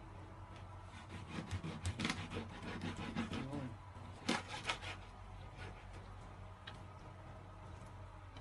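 A kitchen knife sawing and chopping through a whole fish on a plastic cutting board: a run of scraping strokes with sharp knocks, busiest in the middle, the loudest knock a little past four seconds in.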